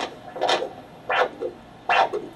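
Handheld vascular Doppler picking up the brachial artery pulse at the elbow, heard through the unit's speaker as three whooshing beats about two-thirds of a second apart, each followed by a short, fainter second pulse.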